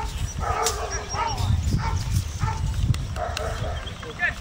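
A dog barking and yipping in short bursts through a steady low rumble of wind or handling noise.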